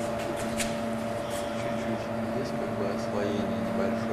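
Chrysler Grand Voyager minivan's engine idling, a steady hum with an unchanging whine above it.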